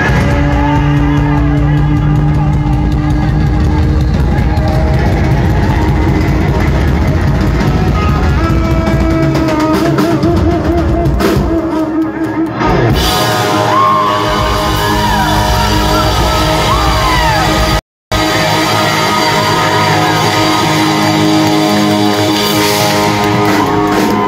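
A live rock band plays loud, led by an electric guitar holding sustained notes with wavering string bends over bass and drums. The sound drops out completely for a split second about eighteen seconds in.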